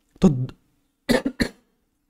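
A man coughing: a quick run of about three short coughs about a second in.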